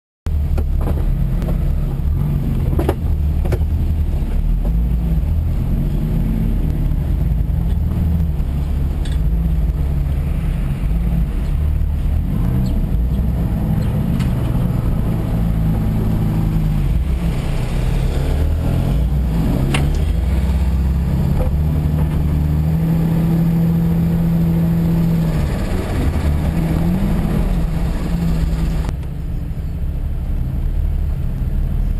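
Jeep engine running under load, its revs rising and falling as it climbs and crawls, with a few sharp knocks from the drive. The sound starts abruptly just after a silent moment.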